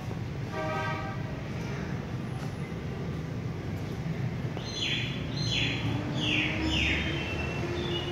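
Steady low rumble of city traffic, with a short horn toot about half a second in. Near the end come four quick falling chirps, like a bird calling.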